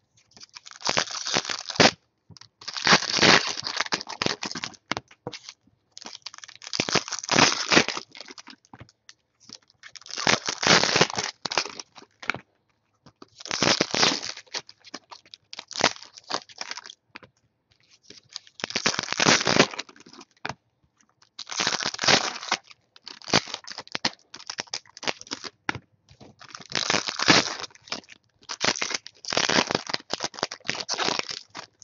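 Trading-card pack wrappers being torn open and crinkled by hand, one pack after another, in about ten crackling bursts every two to three seconds.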